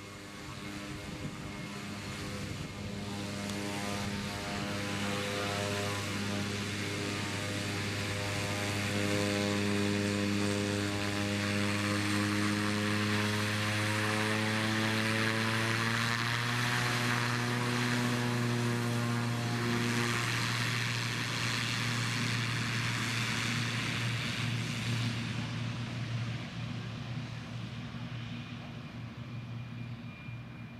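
Pilatus PC-6 Porter's engine and propeller running at taxi power, a steady droning hum. It builds as the plane taxis up, is loudest and dips slightly in pitch as it passes close about halfway through, then fades as it moves away.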